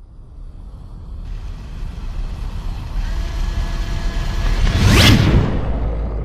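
Logo-sting sound effect: a rumbling whoosh that swells steadily from silence to a peak about five seconds in, then eases off.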